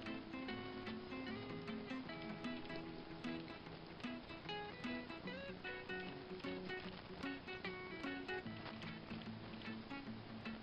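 Quiet instrumental background music of plucked acoustic guitar, one note after another.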